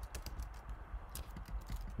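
Computer keyboard typing: a quick, irregular run of light key clicks as a form field is edited.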